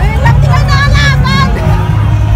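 Parade crowd noise: voices of marchers with one higher voice calling or singing out over the first second and a half, over a steady low hum.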